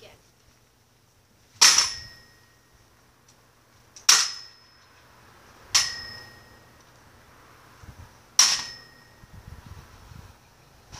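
A Nerf Longstrike CS-6 toy blaster jabbed against a trampoline four times, a couple of seconds apart: each blow a sharp, loud crack with a brief metallic ring after it.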